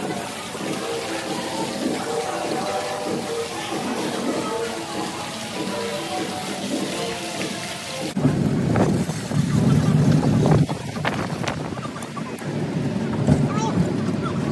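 Soft background music over a steady hiss of lobby ambience. After a sudden cut about eight seconds in, loud wind buffeting on the microphone and rumble from a moving open shuttle cart.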